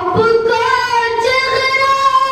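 A boy singing a devotional recitation (paish-khawani), his voice sliding up into one long held note.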